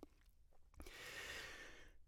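A faint breath close to a studio microphone, starting about a second in after a near-silent pause and lasting about a second.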